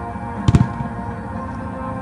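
Fireworks going off over show music: a quick cluster of two or three sharp bangs with a deep thump about half a second in, then a fainter pop, while the music plays steadily.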